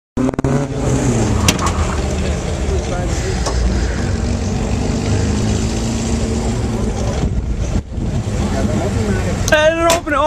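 A car engine running with a steady low rumble, with voices in the background. Near the end comes a brief wavering, high-pitched sound.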